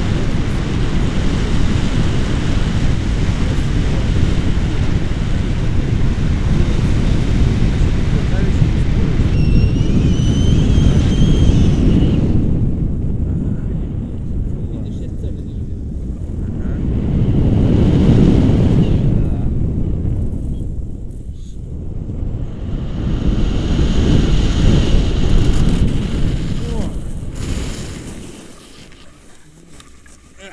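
Wind buffeting the microphone of a camera on a paraglider in flight: a loud, rough rumble that rises and falls in gusts, then dies away near the end as the glider touches down.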